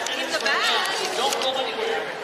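Speech and crowd chatter: several voices talking over one another, with one man's short word at the start.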